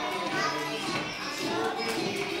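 A group of young children singing together, their voices loose and not quite in unison.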